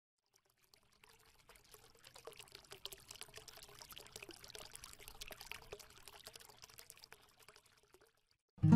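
Faint trickling, pouring-like patter of many small clicks, building up about two seconds in and fading out near the end.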